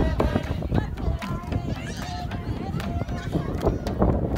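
Crowd chatter: many people talking and calling out at once, over a low rumble and scattered short knocks.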